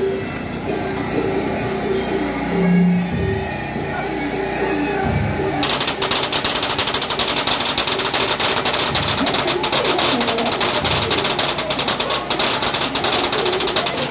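Temple procession music, a wind melody over drum beats, plays at first. About six seconds in, a long string of firecrackers starts crackling rapidly and keeps going over the music.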